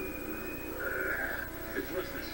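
A television drama's soundtrack playing over speakers and picked up from the room, with faint indistinct voices and a brief high steady tone at the start.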